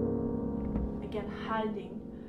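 A piano chord ringing and slowly fading. About a second in, a woman's voice begins softly over it.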